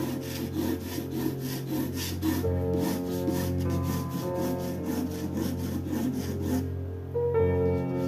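Graphite pencil scratching across watercolour paper in quick, repeated sketching strokes, several a second, stopping about two-thirds of the way through. Soft piano music plays underneath.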